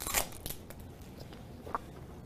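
A lollipop's plastic wrapper being handled: a brief crinkling rustle just after the start, then faint small clicks, one near the end.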